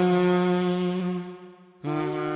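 Logo intro jingle of a long, steady chanted vocal note that fades away about a second and a half in; after a brief gap a new held note starts just before the end.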